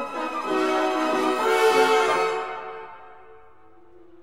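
A full symphony orchestra playing late-Romantic music: strings and winds swell to a loud peak about halfway through, then die away to a soft sustained chord.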